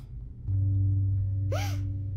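A short, high gasp from a cartoon voice, rising and falling in pitch, about a second and a half in. Under it, a loud, deep, steady drone sets in about half a second in and holds on.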